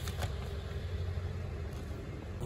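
Outdoor city street ambience: a steady low rumble of road traffic with a faint noisy hiss, and two light clicks near the start.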